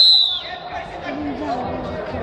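Referee's whistle: one short blast of about half a second that dips in pitch as it cuts off, stopping the ground wrestling. Voices in the hall go on behind it.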